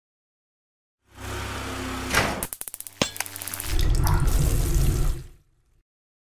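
Sound-designed logo sting: a noisy swell starts about a second in and rises into a whoosh, followed by a quick run of stuttering clicks and a sharp hit at about three seconds. A deep, bass-heavy swell follows and fades out shortly before the end.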